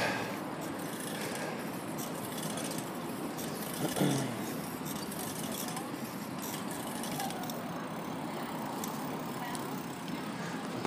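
Steady outdoor hum of distant road traffic, with one brief louder sound about four seconds in.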